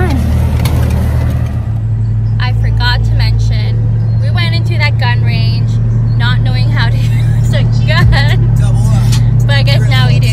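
Steady low drone of a car's engine and road noise heard inside the cabin of a moving car, with a woman's voice over it from about two seconds in.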